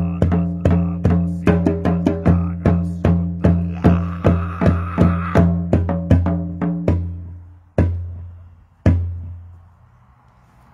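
Large hand-held frame drum struck with a beater in a steady beat, about two and a half strokes a second, each stroke a deep ringing boom. The beat stops about seven seconds in, followed by two last single strokes about a second apart that ring out.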